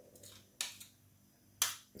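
Spoon knocking against a glass mixing bowl of melted chocolate: two sharp clinks about a second apart, the second the louder.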